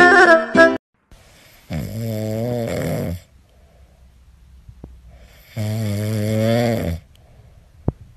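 Kitten growling while it eats, two long low growls about four seconds apart. Music cuts off under a second in.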